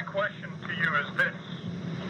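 A man speaking on a recorded telephone call, in short phrases over a steady low hum.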